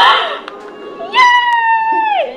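A young woman's voice: a short loud exclamation, then a high-pitched squeal held for about a second on one note that slides down at the end.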